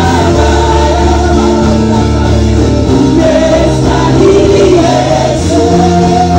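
Gospel praise team of men and women singing together into handheld microphones, over an amplified keyboard accompaniment with sustained bass notes.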